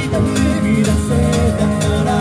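Live band music: a drum kit played by a drum-playing robot, with electric guitar and keyboard, and a singing voice over it.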